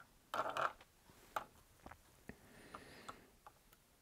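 Small clicks and rustles of hands working fly-tying thread, tools and materials at the vise, with one louder rustle just under a second long near the start and a handful of faint sharp ticks after it.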